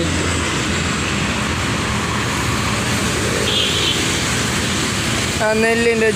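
Steady highway traffic noise as cars and motorbikes go by, a continuous rush of engines and tyres.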